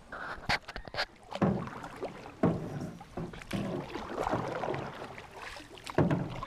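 Canoe paddles dipping and pulling through river water, a swish about once a second, with a few sharp knocks in the first second.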